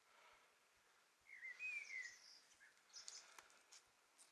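Faint songbird singing in the background: one short warbling phrase about a second in, followed by a few high, thin notes, over quiet outdoor ambience.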